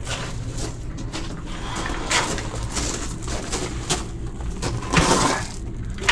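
Gravel crunching and shifting in irregular bursts, louder twice, as someone moves over a gravel crawl-space floor, with a steady low hum underneath.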